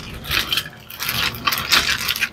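A clear plastic zip-top bag crinkling as it is handled, with small plastic action figures and their accessories rattling against each other inside, in a string of short irregular bursts.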